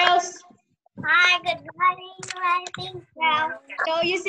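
A high-pitched child's voice singing in long held notes over a video-call connection, breaking off briefly about half a second in and starting again a second in.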